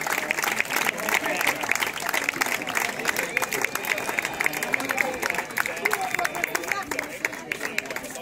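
A seated crowd applauding, dense clapping mixed with voices, that thins out and gets quieter near the end.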